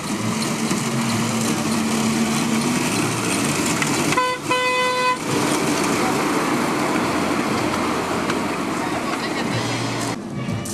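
Horn of a miniature ride-on railway locomotive giving two toots about four seconds in, a very short one and then a longer one of under a second, over steady background chatter of onlookers.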